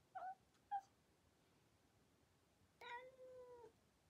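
Domestic cat yowling from inside a zipped soft pet carrier: two short meows, then one longer drawn-out call near the end. It is a cat protesting at being shut in the carrier.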